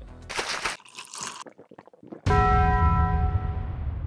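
A single bell-like strike about two seconds in, ringing on with several steady tones over a deep low boom and slowly fading; an edited sound effect. Before it come two short hissing noises.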